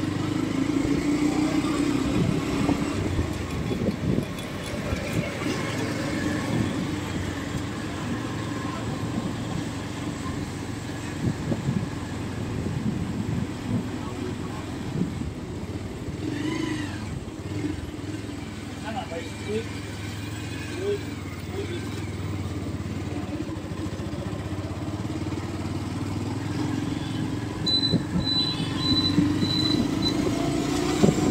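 Traffic noise heard from a moving vehicle on a road: a steady engine hum with road rumble and passing auto-rickshaws. Near the end comes a run of short, high, evenly spaced beeps.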